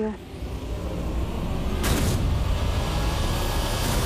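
A deep, steady low rumble of dramatic sound design, with a short rushing swoosh about two seconds in.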